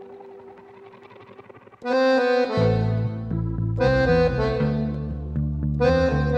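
Piano accordion music: a quiet held opening, then about two seconds in the accordion comes in loudly with the melody in full reedy chords, and a rhythmic bass line joins just after.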